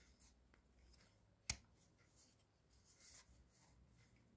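Near silence, broken by a single short click about one and a half seconds in as the folding multitool is closed up.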